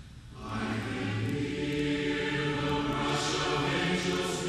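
A choir singing slow, sustained chords. After a brief lull, a new phrase begins about half a second in, with a hissed 's' consonant near the end.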